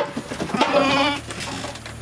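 A goat bleats once, a single wavering call of under a second starting about half a second in.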